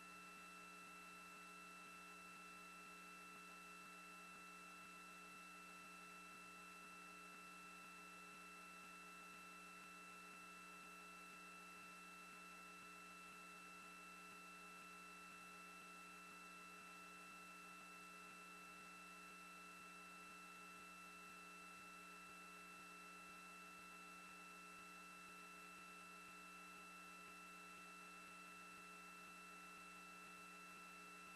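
Near silence: a faint steady electrical hum with a few fixed high tones over light hiss, unchanging throughout.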